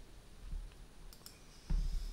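Quiet room tone with a few faint, sharp clicks, followed near the end by a low thump.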